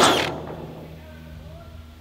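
Cordless drill finishing a pre-drilled screw hole through a corrugated steel roof panel; its high whine cuts off in the first half second. A low steady hum goes on underneath.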